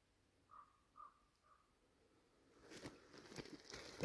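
Near silence. In the first second and a half there are three faint, short calls from a distant bird. In the last second or so there is faint rustling with a few light knocks.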